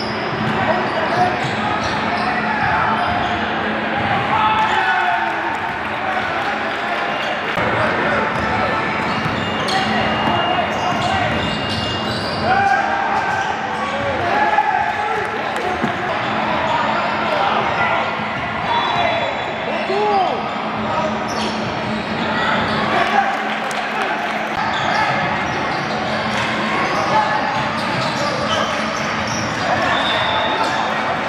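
Live game sound in a gym: a basketball dribbling on a hardwood court, sneakers squeaking, and indistinct voices of players and spectators calling out, all echoing in the large hall.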